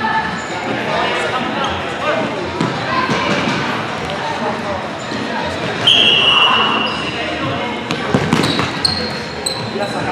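Indoor futsal play on a hardwood gym court: the ball being kicked and bouncing, echoing voices of players and onlookers, and short high sneaker squeaks near the end. About six seconds in, a referee's whistle gives one steady blast lasting about a second, the loudest sound.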